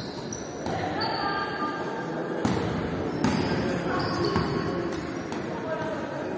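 A basketball bouncing on a hardwood court, several irregularly spaced bounces that echo in a large gym.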